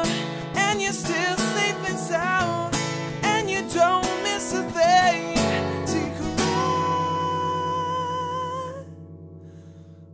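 Acoustic guitar fingerpicked under a man's singing voice, with a long held note about six and a half seconds in. The playing then drops away to a quiet pause near the end.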